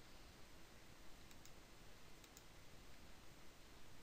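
Faint computer mouse clicks, two quick pairs like double clicks, over near-silent room hiss.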